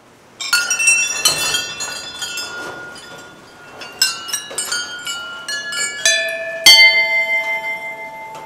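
Several hanging temple bells struck one after another at an uneven pace. Their ringing tones overlap at many pitches, and the loudest strike comes near the end.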